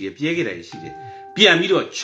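A man talking, with a short, steady electronic beep of one pitch and its overtones sounding for about two-thirds of a second shortly before the middle and cutting off suddenly.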